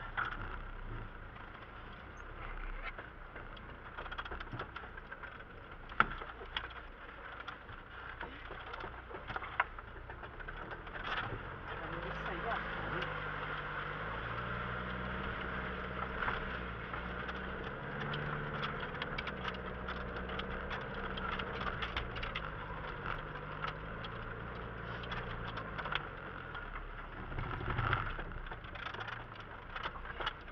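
Off-road vehicle's engine heard from inside the cab while it crawls over rough ground, its pitch rising and falling in steps as the throttle and gear change, with the body knocking and rattling over bumps; one sharp knock stands out about six seconds in.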